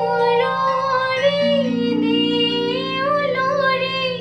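A woman singing a slow melody with long, wavering held notes, accompanied by sustained chords on an electronic keyboard.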